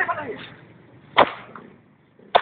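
A single sharp lash, a whip striking a flagellant penitent's back, about a second in, after a voice trails off.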